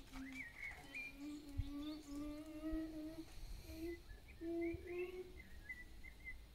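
A person humming softly, a slow run of held notes that waver in pitch, with faint high chirps behind.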